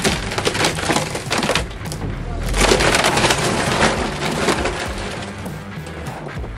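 Wooden porch being pulled down by a chain: timber cracking and splintering, then the structure collapsing with a heavy crash about two seconds in.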